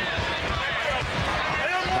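Basketball dribbled on a hardwood court floor, a run of short low thuds. A commentator's voice comes back in near the end.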